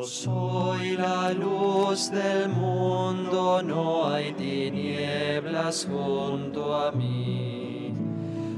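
Church music: a slow sung melody over instrumental accompaniment with held bass notes, played during communion at Mass.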